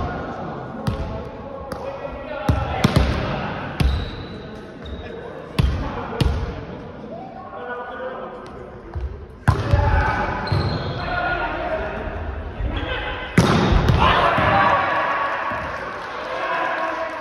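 A volleyball being struck during play in a gymnasium: about ten sharp slaps of the ball off hands and arms at uneven intervals, the loudest near the end, ringing in the hall, with players shouting between the hits.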